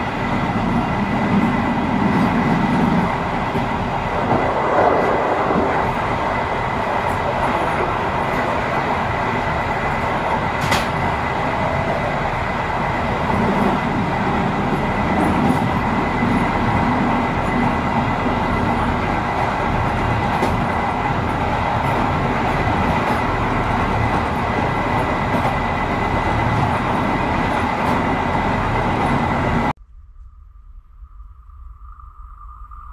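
A train running along the track, heard from the front of the train: a steady rumble of wheels on rails with a steady high whine above it and a single sharp click about ten seconds in. The sound cuts off suddenly just before the end.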